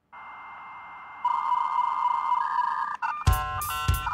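Dial-up modem connection sounds used in an electronic music track: a hiss with a steady high answer tone, joined about a second in by a louder warbling tone that shifts pitch. About three seconds in, drum hits and rapid stepped electronic beeps come in.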